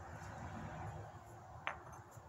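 Faint handling sounds of a stone core and hammerstone, then one sharp click of stone tapping on stone about one and a half seconds in. This comes just before the heavy percussion blows that strike spalls off the core.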